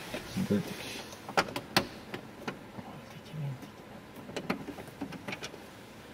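Scattered sharp clicks and small knocks of a screwdriver and plastic trim as the screws holding the glovebox of an Opel Zafira are undone, with a brief low murmur from a voice twice.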